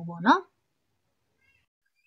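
A woman's voice draws out the last word of a sentence, its pitch held and then rising, and stops about half a second in; silence follows.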